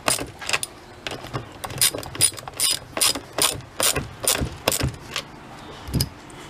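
Hand socket ratchet clicking as it is swung back and forth to tighten the chainsaw's bar nuts, about three clicks a second; the clicking stops about five seconds in.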